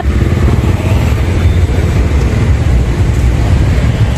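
Steady low rumble of road traffic, with motor vehicles running.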